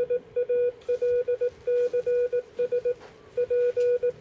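A Morse code beacon tone, one steady pitch keyed on and off in dots and dashes, spelling out the call "PALCS" and then the first letter of "PROJECT". There is a longer pause between the words about three seconds in.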